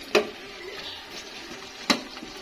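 A metal spoon stirring diced carrots and potatoes in a large aluminium pot, knocking sharply against the pot twice, once just after the start and more loudly near the end. Between the knocks the vegetables sizzle faintly.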